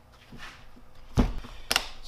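Blue plastic tool carry case being closed on a wooden workbench: faint handling noise, then a thunk a little over a second in and a sharp click about half a second later as the case shuts.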